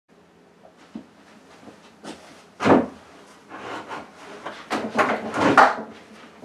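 A person moving about close to the microphone: a series of irregular knocks, bumps and rustles, the loudest about two and a half seconds in and another cluster near the end.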